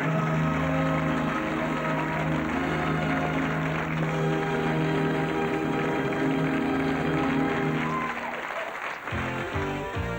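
Studio audience applauding over a held musical chord, which fades out about eight seconds in. A different, rhythmic jingle starts about a second later.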